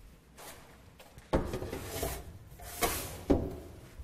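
Meal trays sliding into the shelf rails of a food-service trolley, with three sharp knocks and scrapes as they go in: the first about a second in, two more near the end.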